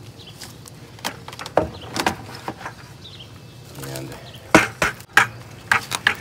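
Hard plastic knocks and clunks from handling a five-gallon plastic bucket and its lid as the bucket is lifted out of a plastic tub: a few separate sharp knocks, then a tighter cluster near the end.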